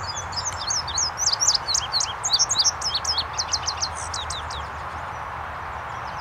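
Male indigo bunting singing: a rapid string of high, sharp, slurred notes lasting about four seconds, over a steady background hiss.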